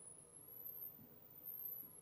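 Near silence: faint room tone with a thin steady hum and two soft, brief low sounds, about a second in and near the end.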